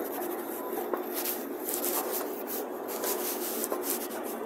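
Escalator running: a steady hum under a rushing hiss, with a few light clicks.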